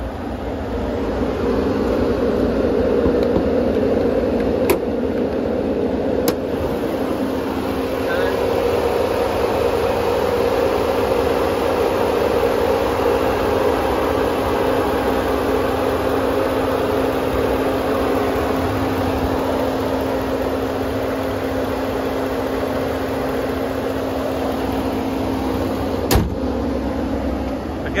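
2019 Ram Limited pickup's 5.7-litre Hemi V8 idling with the hood open, a steady hum. There are two sharp clicks a few seconds in, and a single sharp knock near the end as the hood is shut.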